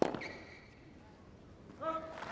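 Tennis rally on a hard court: a sharp racket strike on the ball right at the start, then about two seconds later a player's short grunt on the next shot.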